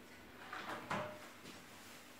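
Kitchen oven door pulled open: a soft rub and then a single clunk a little before a second in, with a brief metallic ring.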